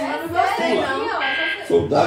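A brief game-show buzzer tone, about a third of a second long, sounds a little over a second in, played through a television over ongoing speech.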